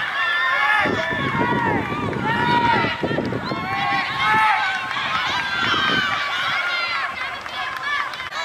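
Several voices shouting over one another, in short rising-and-falling calls: players and spectators yelling during play in a soccer match.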